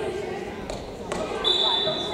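A referee's whistle blown once, a steady held tone starting about one and a half seconds in: the signal for the serve. Before it, two sharp thumps of a volleyball bounced on the hardwood gym floor, with voices in the hall.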